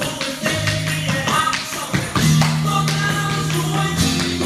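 Music with a bass line and a quick percussive beat.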